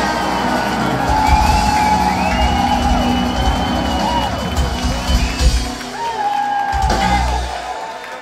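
Live country band playing an instrumental passage at the end of the song, with an upright bass and sustained, sliding melody notes, while the crowd whoops and cheers. The music fades slightly in the last second.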